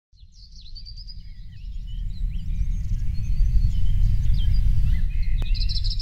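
Several birds chirping and calling over a deep, steady rumble, which is the loudest sound. The whole swells up over the first few seconds.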